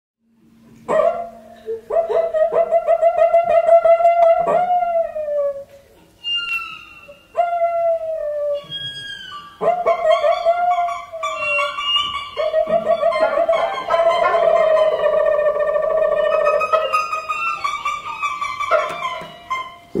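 Brazilian cuíca friction drum and the other instruments trading squeaky, sliding calls that imitate animal sounds. The notes glide mostly downward in short phrases with pauses between, then from about halfway they overlap in a denser, busier passage.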